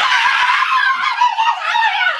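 Two young women screaming together in an excited high-pitched greeting shriek, held without a break and wavering in pitch; it is very loud.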